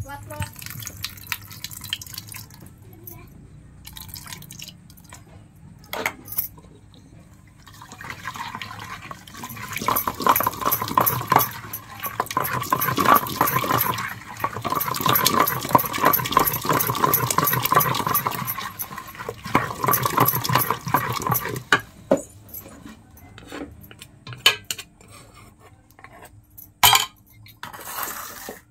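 Wooden masher working amaranth leaves and tamarind water into a wet chutney in an aluminium pot: a fast, steady run of wet mashing and scraping strokes from about eight seconds in until about twenty-two seconds in.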